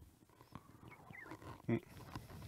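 A pause in speech: faint room sound in a lecture hall, with scattered faint voice sounds and one short vocal sound, like an "uh" or a breath, about three-quarters of the way through.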